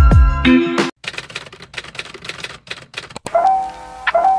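Intro music with deep bass drops cuts off about a second in. Then come about two seconds of rapid, irregular clicking like a typewriter, and a soft new tune starts near the end.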